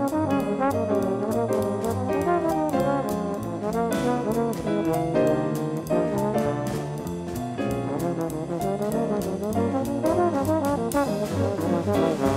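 Slide trombone playing a moving jazz line, notes sliding into one another, over keyboard and drum kit with steady cymbal strokes.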